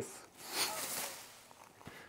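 Clear plastic drop sheet rustling as it is pulled across: a soft swish that swells and fades within about a second.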